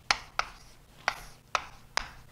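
Writing on a lecture board: about five sharp taps and light rubbing as letters are written.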